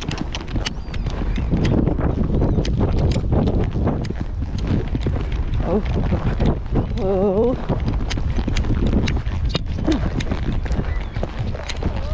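A horse cantering on a sand arena, heard from the saddle: repeated hoofbeats with wind noise on the microphone, and a brief wavering vocal sound about seven seconds in.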